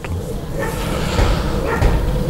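Garden hose spray nozzle hissing steadily as it mists water over a bed of thuja seedlings.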